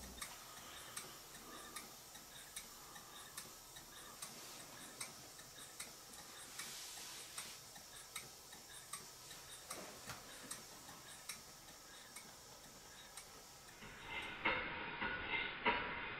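Stuart S50 model steam engine running on compressed air, with a faint regular tick a little more than once a second over a light hiss. Near the end it turns louder and busier, with quicker clicking.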